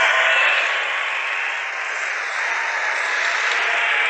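Large rally crowd applauding and cheering: a dense, steady din of clapping and voices that swells just before and holds, easing slightly toward the end.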